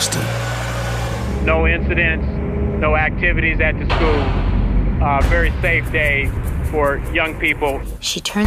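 Steady low rumble of a car driving, heard from inside the cabin, with a voice talking over it from about a second and a half in.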